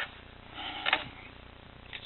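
A light click of a cable plug being pushed into a powered USB hub, heard once a little under a second in against quiet room tone.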